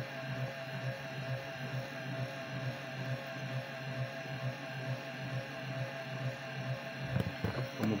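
Gearmotor set, a DC motor coupled to an AC motor's gearbox, running steadily on 12 volts with a continuous hum. A couple of light clicks near the end.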